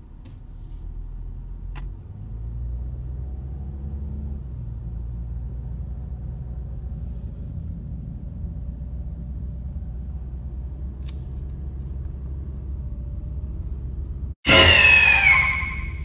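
Car cabin noise while driving slowly: a steady low rumble of engine and tyres, with a couple of faint clicks. Near the end the sound cuts briefly and a man's voice comes in.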